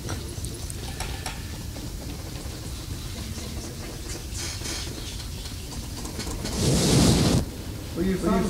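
Microphone handling noise as a boom mic stand is repositioned: low rumble with scattered small clicks, then a loud burst of rubbing noise lasting under a second near the end.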